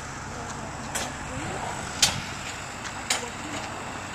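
A steady low engine hum, with sharp ticks about once a second from footsteps while walking.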